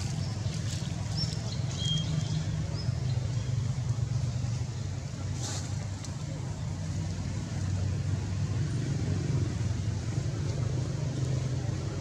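A steady low rumble like distant motor traffic, with a faint short chirp about two seconds in and a faint click about five and a half seconds in.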